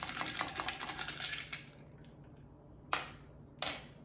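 A metal spoon stirring a drink in a glass, with rapid clinking against the glass that stops about a second and a half in. Two single sharp clinks follow near the end, the second one ringing briefly.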